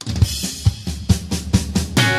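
A drum kit opens a recorded pop song on its own, playing kick drum and snare hits in a quick, even pattern of about five hits a second.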